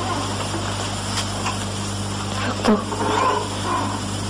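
Steady low hum with an even hiss from an old analogue recording. A faint, brief voice comes in around the last second and a half.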